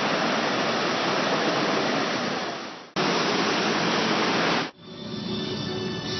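Steady rushing roar of a waterfall, fading and cut off about three seconds in, returning briefly and stopping suddenly near five seconds. Background music follows.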